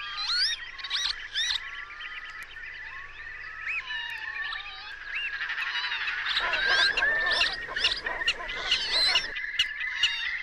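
Northern lapwings and other waders calling over one another in a dense chorus of whistled notes that slide up and down. From about six seconds in, a rushing noise joins for a few seconds.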